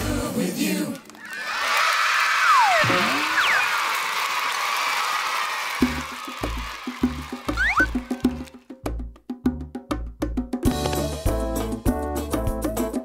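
A song ends and a crowd of children cheers and shrieks for a few seconds. Then a hand-played bongo rhythm starts, and a music track joins it near the end.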